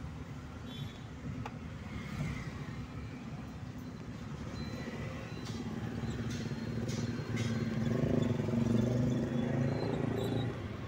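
Car engine and road noise heard from inside the cabin while driving, the low engine note growing louder toward the end as the car pulls ahead. A few brief clicks occur around the middle.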